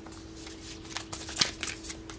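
Tarot cards being handled and shuffled: a run of light snaps and slides of card stock, the sharpest about one and a half seconds in.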